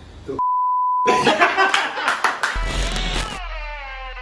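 A steady, high single-pitch censor bleep lasting under a second, with everything else cut out beneath it. It is followed by a loud burst of clicky, glitchy noise, then a deep boom and a cluster of tones sliding downward in pitch, a power-down style sound effect.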